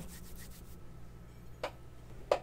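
An aluminium bar being handled: a faint, brief rubbing, then a single light click about a second and a half in.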